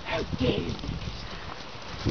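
Horses' hooves stepping on soft dirt and straw, a run of dull irregular thuds, with a short voice sound in the first second.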